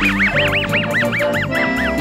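Muttley's cartoon laugh: a rapid wheezing snicker of high, rising-and-falling squeaks, about six a second, that stops just before the end.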